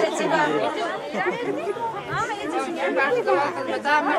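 Several people talking over one another at once: continuous overlapping chatter.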